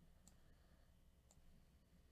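Near silence with two faint computer mouse clicks about a second apart.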